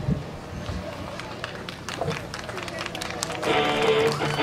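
Scattered knocks and rustling with faint voices in the background, then guitar music starts near the end.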